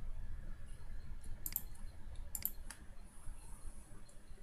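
Computer mouse button clicks: a quick pair about one and a half seconds in, another pair near two and a half seconds, then a single click, over a steady low hum.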